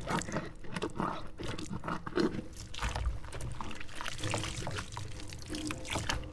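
Water pouring and splashing out of a small glass mason jar into a stainless-steel sink as the jar is rinsed, in irregular gushes with small knocks.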